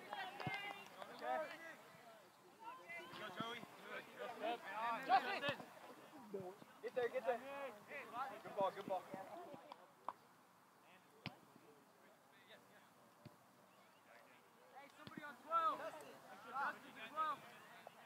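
Indistinct shouts and calls of players across an outdoor soccer field, with a few sharp single knocks in between. The voices drop away for several seconds past the middle and come back near the end.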